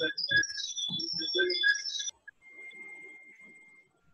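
Garbled, distorted voice audio over a video-call connection for about two seconds, with steady electronic tones through it. After that comes a faint steady whistle-like tone that fades out near the end.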